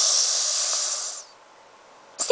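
A woman hissing through her teeth: a sharp 'sss' about a second long that stops abruptly, leaving faint room noise.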